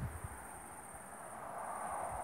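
Crickets trilling steadily in a thin, high continuous band, with a few low bumps on the microphone near the start.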